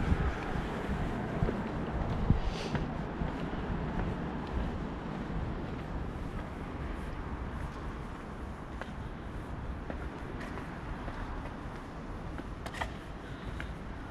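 Wind rumbling on the microphone, with a few faint scattered clicks.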